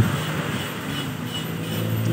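Road traffic passing close by on a wet road: a steady hiss of tyres with a low engine hum that grows stronger in the second half.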